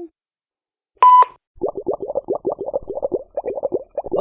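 A short answering-machine beep about a second in, then a rapid run of bubbly, gurgling blips, about ten a second, that stand for a cartoon character's voice leaving a message.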